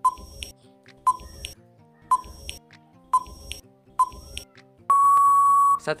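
Quiz countdown-timer sound effect: five short beeps about one a second, each with a low thud, then one longer steady beep near the end signalling that time is up.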